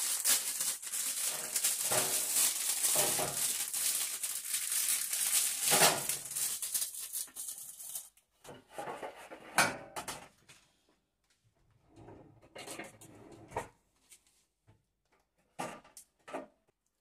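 Plastic packaging crinkling and rustling as frozen breaded chicken burgers are taken out of the pack, for about the first eight seconds. After that comes a scatter of light knocks and scrapes as the patties and tongs meet a metal oven tray.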